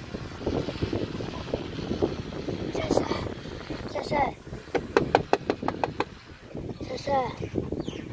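Indistinct talking, with a quick run of about ten sharp clicks about five seconds in.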